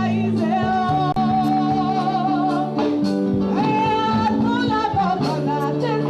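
Music with a singing voice holding long, wavering notes over steady low sustained chords, with light percussion ticks.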